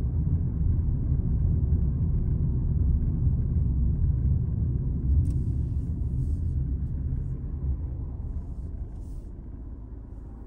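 Road and tyre rumble heard inside a moving car's cabin, dying away over the last few seconds as the car slows behind traffic. A few faint short hisses come in around the middle and again near the end.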